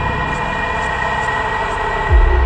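Psytrance track intro: a sustained electronic synth drone with layered held tones and a low rumble, with faint high ticks about twice a second and no kick drum yet.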